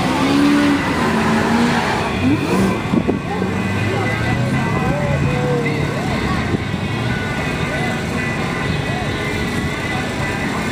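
Car engines running as a Mercedes CL55 AMG and a supercharged Ford Mustang GT line up for a drag race, with crowd voices around.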